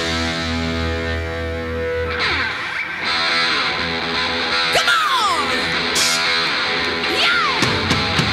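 Live hard rock from a guitar, bass and drums trio: a distorted electric guitar over bass and drums, holding a chord for the first two seconds, then playing a riff with two falling slides and a cymbal crash in between.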